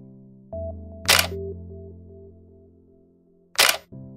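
Two camera shutter clicks, about a second in and near the end, over soft background music with held keyboard chords.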